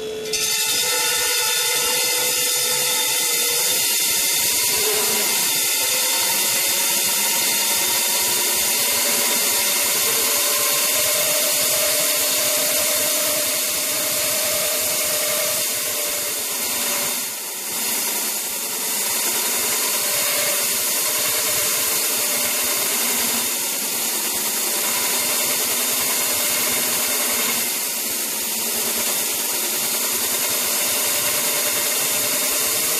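Specialist concrete drill cutting into reinforced concrete: a loud, steady grinding over a steady motor whine, which starts suddenly at the very beginning and dips briefly a little past halfway.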